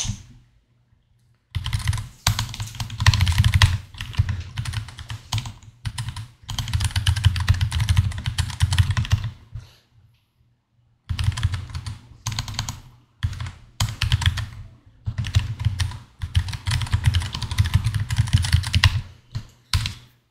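Typing on a computer keyboard: fast runs of keystrokes starting about a second and a half in, a pause of about a second and a half midway, then a second run of typing until just before the end.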